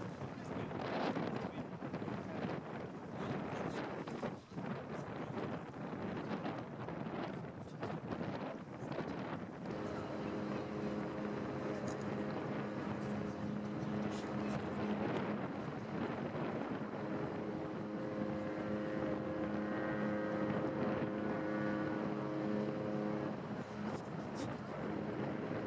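A large cruise ship's propulsion machinery humming as it manoeuvres off its berth. The steady low drone of several pitches starts about ten seconds in, weakens briefly near the middle, and stops just before the end. Wind buffets the microphone throughout, most noticeably in the first part.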